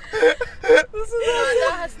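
A woman laughing hard in two short bursts, then a long, wavering, drawn-out vocal sound from about a second in.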